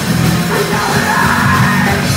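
Hardcore punk band playing live: distorted electric guitar, bass and drum kit, with the vocalist yelling over them from about half a second in.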